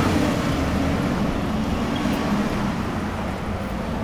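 Road traffic noise: a steady rumble of passing vehicles that slowly fades.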